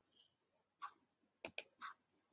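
Four sharp clicks on a computer, two of them in quick succession about one and a half seconds in, as screen sharing is being set up.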